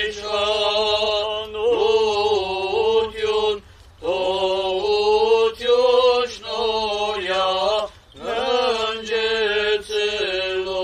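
Armenian Apostolic clergy chanting a liturgical hymn: long held, stepping notes in phrases of a few seconds, with short breath pauses between them.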